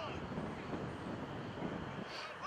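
Indistinct voices of players and onlookers on an open field, over a steady low rumble of wind on the microphone.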